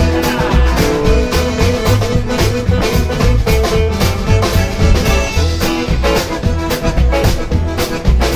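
Live rockabilly band playing an instrumental break, with no singing: hollow-body electric guitar and accordion over drums and bass, with a steady, driving beat.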